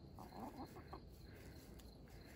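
Domestic hens clucking faintly, a quick run of soft short clucks in the first second while they peck at food scraps.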